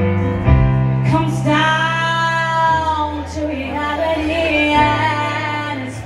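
A woman singing a ballad while accompanying herself on piano. About a second in she holds one long note for about two seconds, then moves into shorter phrases over sustained low piano chords.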